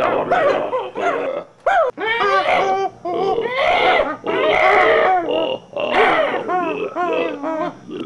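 A man making wordless, animal-like cries: a quick run of short yelps and howls that rise and fall in pitch, with brief breaks between them.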